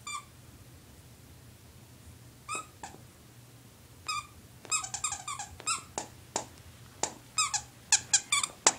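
Squeaker inside a stuffed ladybug dog toy squeaking as a Shih Tzu chews it: a single squeak at first, a pair a couple of seconds later, then quicker and quicker runs of squeaks through the second half.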